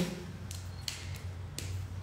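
A few faint taps and clicks of a pen being handled to jot a note, over a steady low hum.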